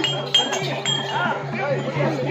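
Small hand cymbals clinking over a steady low drone, with voices talking.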